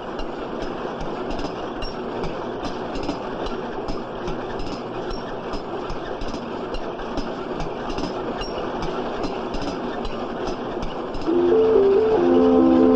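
Automatic packet-filling machine for hot cocoa mix envelopes running with a steady clattering noise and a regular clicking, two or three clicks a second. Music comes in near the end.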